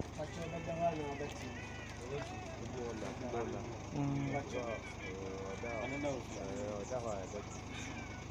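People's voices speaking or calling out, in words the recogniser did not transcribe, over a steady low hum.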